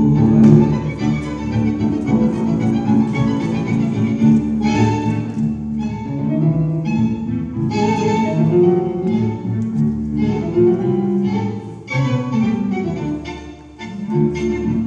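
Argentine tango music played by an orchestra, with violins and other bowed strings carrying the melody and sharp accented chords every few seconds. It drops softer near the end.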